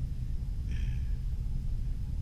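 Steady low rumble of room background noise, with a brief faint hiss about three quarters of a second in.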